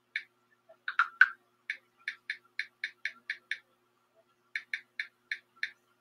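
Computer keyboard being typed on: runs of quick, sharp key clicks about four a second, with two heavier strokes about a second in and a pause of about a second midway, over a faint steady hum.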